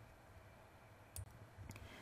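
Near silence: room tone, broken by one faint, short click a little past a second in and a fainter one near the end.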